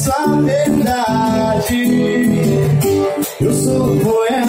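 Acoustic guitar strummed live while a man sings into a microphone, with a short break about three seconds in.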